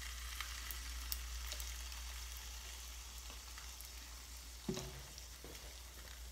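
Pancake batter frying in hot oil in a frying pan: a steady sizzle with scattered crackles and pops, easing slightly as it goes. A single knock sounds about three-quarters of the way through.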